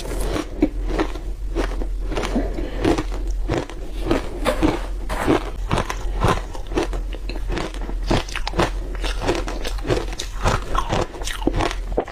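Close-miked crunching and chewing of a mouthful of matcha-coated shaved ice: a steady run of crisp crunches, about two or three a second.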